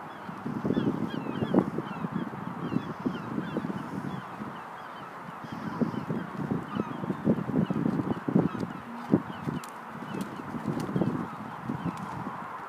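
Birds calling over and over in short calls, against uneven outdoor background noise.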